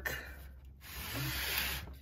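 A steady faint hiss with a low hum beneath, dropping out briefly twice.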